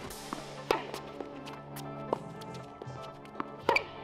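Tennis balls struck by racquets during a rally: a few sharp pops a second or so apart, the loudest about a second in and near the end, over steady background music.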